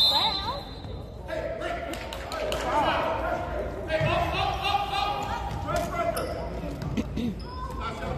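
A basketball bouncing on a gym's hardwood floor during play, under indistinct voices and calls from spectators and players in the hall.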